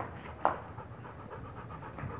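A Rottweiler panting fast and steadily with its mouth open, with one brief sharp sound about half a second in.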